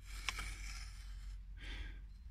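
A wooden stick scraping lines into dry, packed soil: soft rasps, with a small tick about a quarter second in.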